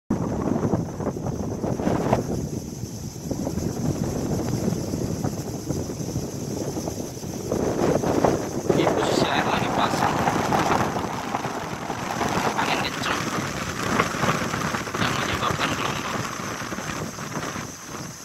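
Strong, gusty wind rushing and buffeting the microphone, with wind-driven waves washing on choppy water; it grows louder about halfway through.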